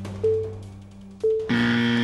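Game-show countdown music ticking about once a second, each beat with a short tone, then about one and a half seconds in a loud, held game-show buzzer starts, sounding the end of the pass as the answer is revealed.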